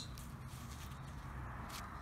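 Faint steady outdoor background noise with a couple of soft clicks, no detector tone sounding.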